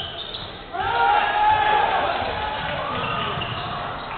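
Live court sound of a basketball game in a sports hall: a ball bouncing on the hardwood floor amid players' and crowd voices, growing louder about a second in.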